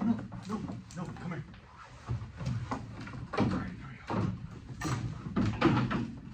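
Indistinct low talk, with several wooden knocks and bumps as a cow is led into a wooden milking stanchion.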